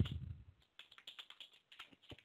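Computer keyboard typing: a quick run of faint key clicks, about six a second, after a low muffled bump at the start.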